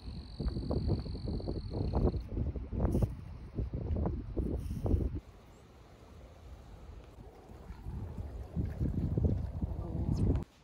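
Wind buffeting the microphone in irregular low rumbling gusts, dropping away about five seconds in and picking up again near the end.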